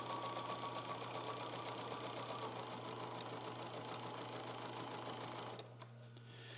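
Electric sewing machine stitching fabric at a steady speed, the needle's rapid even rhythm running until it stops near the end.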